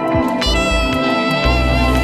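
Downtempo Balearic electronic music: a remix of a jazzy instrumental, with sustained melodic tones over a bass line and a steady beat.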